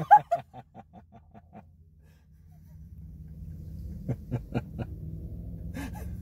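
Hearty laughter in rapid ha-ha pulses that fade away over about a second and a half, followed about four seconds in by a second, shorter burst of laughing.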